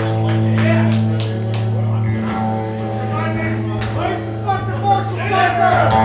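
Live country band holding a long low drone-like note at the close of a song, with voices talking over it.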